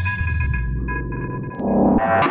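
Electronic tech house track in a breakdown: the drums have dropped out and the highs are filtered away while held synth tones and bass carry on. A new synth pattern comes in near the end.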